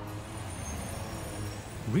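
Steady low hum and noise of distant city traffic, with no clear single event standing out.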